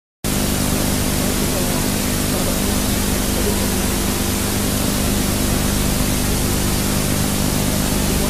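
Steady, loud hiss with a low hum underneath, the noise of an old videotape transfer of a 1980s TV broadcast; it starts abruptly a moment in and holds level throughout.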